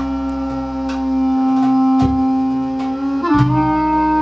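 Clarinet playing one long sustained note that steps up a little near the end, over a low fretless electric bass line and light hand-drum strikes, in a live band performance.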